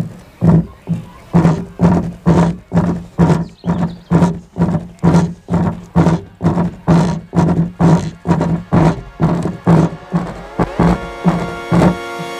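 A bare subwoofer driver, out of its home-theatre cabinet and turned up full, playing a repeating bass-drum beat from a phone DJ app: about two deep thumps a second, as its cone visibly vibrates. Near the end a held synth tone joins the beat.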